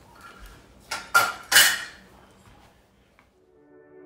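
A stainless steel pot clatters a few times in quick succession about a second in, then soft background music fades in near the end.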